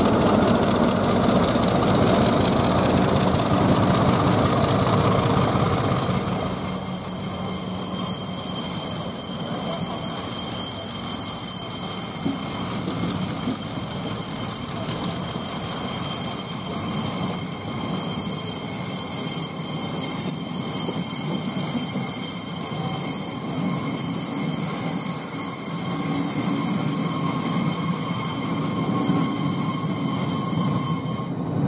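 Class 50 diesel locomotive, with its English Electric engine, rumbling slowly past for the first few seconds. Its coaches then roll by at walking pace with a steady high-pitched wheel squeal.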